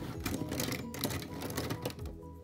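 Plastic pens clicking and rattling against one another and against a metal mesh pen holder as a hand rummages through them: a rapid, uneven run of small clicks.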